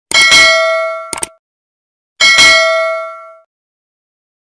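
Notification-bell sound effect of a subscribe-button animation: two bright metallic dings about two seconds apart, each ringing out for about a second. A short sharp click comes between them.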